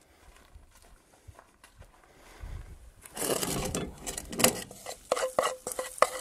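A spoon stirring, scraping and clinking in a bowl of melted herb butter, starting about halfway through, with a few sharp clinks near the end.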